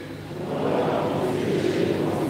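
A congregation speaking its response together in the penitential rite of a Catholic Mass: many voices blurred into one diffuse murmur, with no single voice standing out.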